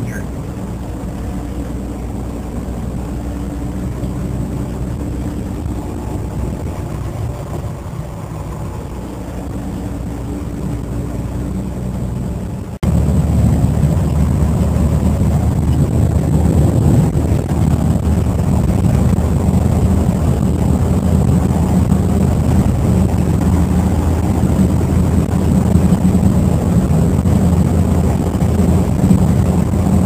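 1955 Fargo pickup's 251 flathead six running steadily under way, heard from inside the cab with road noise. About 13 seconds in, the sound becomes abruptly louder and rougher and stays so.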